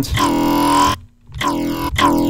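A Serum software-synth dubstep growl bass patch, still being built, plays two notes. The first lasts about a second and the second is shorter, after a short gap. The low pitch holds steady while the upper overtones sweep and swirl.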